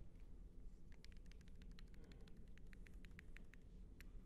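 Near silence: room tone, with a faint run of quick, light clicks starting about a second in and lasting some two and a half seconds.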